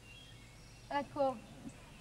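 A person's voice: one short two-syllable utterance with falling pitch about a second in, over a quiet outdoor background.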